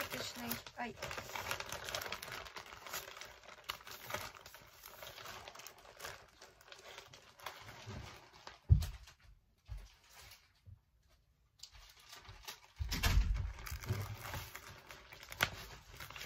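Clear cellophane wrapping film and sheets of florist wrapping paper crinkling and rustling as they are handled. There is a sharp thump about nine seconds in, a brief quiet spell, then louder rustling of the paper.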